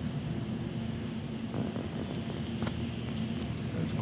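A steady low mechanical hum, with a few faint clicks in the second half.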